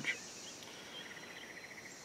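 Faint outdoor background of insects: a steady high-pitched drone, joined about halfway through by a brief, faint, rapid trill of roughly ten pulses a second.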